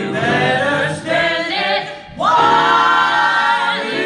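A mixed ensemble of male and female voices singing together in harmony, belting. About two seconds in the voices break off briefly, then come back in loud with an upward slide into a held chord.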